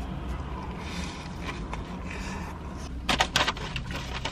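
A person chewing a large bite of a paper-wrapped shawarma over a steady low hum. About three seconds in comes a short burst of crackling, rustling clicks, the loudest sound here.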